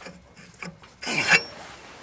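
Handling noise from a home-built air raid siren's shaft and metal housing, with one brief rasping scrape about a second in.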